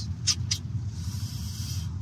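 Cabin noise of the all-electric BYD Seal sedan rolling on a wet track: a steady low road rumble, two short ticks in the first half-second, then a high hiss of tyres or the wiper on wet glass. There is no engine note.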